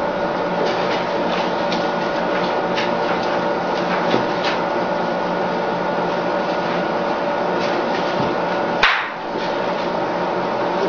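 Steady electrical hum and hiss with several fixed tones, broken by faint scattered clicks and one sharper click near the end.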